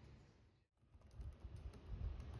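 Near silence: faint room tone that drops out completely for a moment about a third of the way in, followed by faint, irregular clicks.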